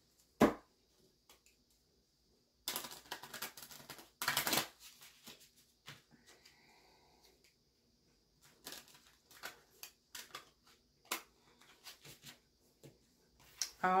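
A deck of tarot cards being shuffled by hand: scattered soft clicks and flicks of card on card, with two denser runs of rapid riffling about three and four and a half seconds in. A single dull thump comes near the start.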